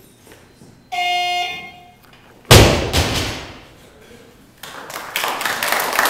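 A short electronic beep, the referees' down signal, about a second in; then a loaded barbell with bumper plates dropped onto the lifting platform, one loud crash that rings on as it dies away. Spectators clap in the last second or two.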